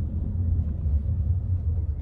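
Steady low rumble inside a car's cabin as it drives.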